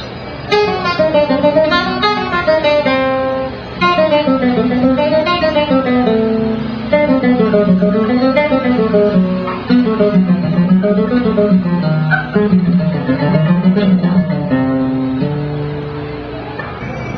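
A guitar playing fast single-note runs as a phrasing exercise. The lines climb and fall in repeated waves, in several phrases with brief breaks between them.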